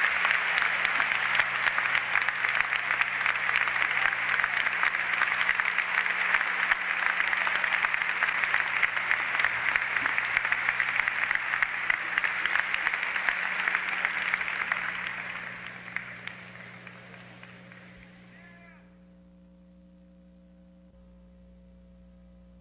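Large audience applauding, a dense, steady clapping that fades out from about 15 seconds in. Only a low electrical hum remains by the end.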